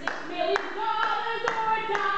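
Hand claps keeping a steady beat, about two a second, over a voice singing long held notes.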